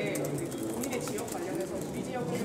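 Indistinct chatter of several people talking at once in the background, noisy enough to make a question hard to hear, with scattered faint clicks.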